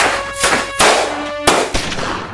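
About four rifle shots, each a sharp blast with a fading tail, over background music.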